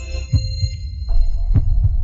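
Sound-design sting for an animated logo: deep low thumps in pairs, like a heartbeat, with a steady held tone coming in about a second in.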